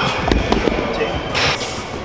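A few dull, heavy thuds about a third to half a second in, as a heavy dumbbell meets the rubber gym floor or the rack. A short hiss follows about a second and a half in.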